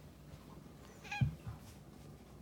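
A cat gives one short, wavering meow about a second in. A dull low thump comes with it, and another follows just after.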